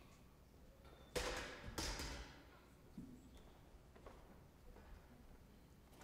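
Two short bursts of rustling and bumping about a second in, then a faint knock near three seconds, over quiet room tone.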